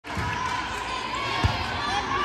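A volleyball being hit once in play, a single sharp smack about three quarters of the way in, over a steady hubbub of voices echoing in the gym.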